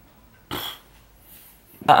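A short, noisy puff of breath-like sound about half a second in, then a man's voice starting to speak near the end.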